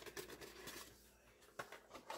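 Faint, light rustle and ticking of powdered pectin being shaken from a plastic packet into a pot, dying away after about a second into near silence.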